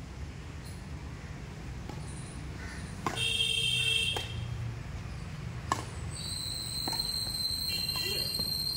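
Badminton rackets striking a shuttlecock four times in a rally, sharp pocks about a second to a second and a half apart. High, steady whistle-like tones sound over it, one about three seconds in and a longer one from about six seconds.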